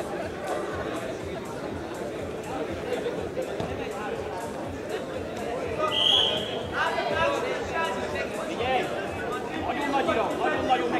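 Indoor arena crowd chatter, many voices talking at once, with a short high whistle about six seconds in, followed by louder raised voices calling out.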